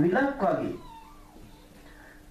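A monk's voice speaking Sinhala, the last word drawn out and trailing off under a second in. A pause follows with a faint steady hum and a faint, brief gliding tone.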